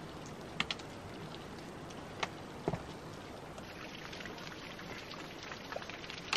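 Footsteps and trekking-pole tips clicking and tapping on a rocky trail, as a few sharp scattered clicks over a steady hiss.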